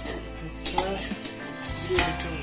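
A steel plate used as a lid clinks against a metal cooking pan as it is handled and lifted off, a few sharp metallic clinks with the loudest near the end.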